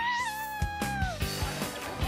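A woman's long, high-pitched shout held on one note, dipping slightly and then falling away about a second in, over upbeat background music with a steady beat. A rising whoosh effect sweeps up just at the start.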